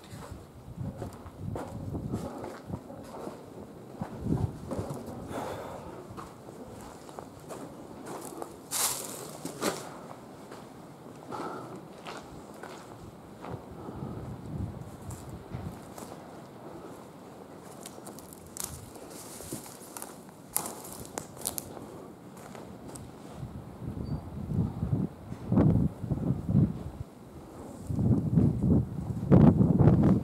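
Footsteps crunching and scuffing over debris-strewn ground, with irregular small clicks and cracks. The thumps grow louder and closer together in the last few seconds.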